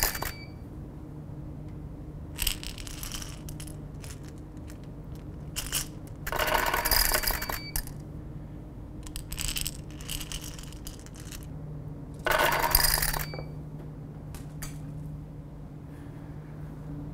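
Handfuls of jelly beans dropped down a tube, clattering into a glass jar about five times at intervals of a few seconds, mixed with a camera's shutter firing in rapid bursts. A short high beep follows some of the drops.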